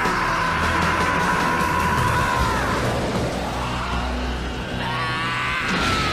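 Soundtrack music under a long, held battle yell that slides down and dies away about two and a half seconds in; another yell begins near the end.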